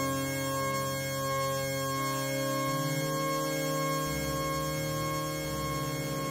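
Electronic music of layered steady, pure sine-like tones: a higher tone pulsing softly about twice a second over low notes that change every second or so.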